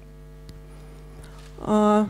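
Steady electrical hum from the microphone and sound system, several fixed tones. Near the end a short held vowel from a woman's voice breaks in.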